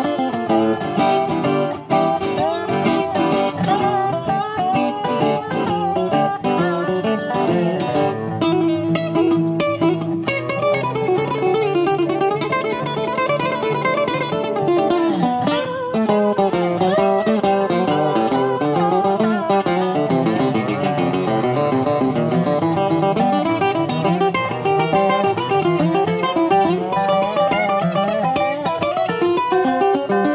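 Instrumental break on two unamplified resonator guitars: a flatpicked National Pioneer RP1 and a Brazilian rosewood Scheerhorn played lap-style with a steel bar. Many of the bar notes slide in pitch, mostly in the middle of the break.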